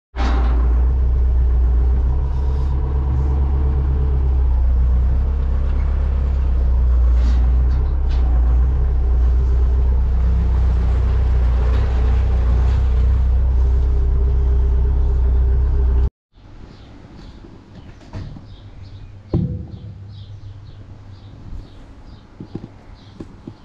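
Tractor engine running steadily, heard from the driver's seat of the open cab while driving. About 16 seconds in it cuts off abruptly to much quieter sound, with a single knock about three seconds later.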